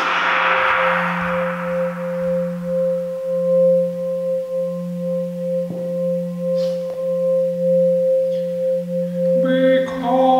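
A sustained musical drone of two steady, gently pulsing pure tones, one low and one higher. A noisy wash dies away over the first couple of seconds, and a voice comes in over the drone just before the end.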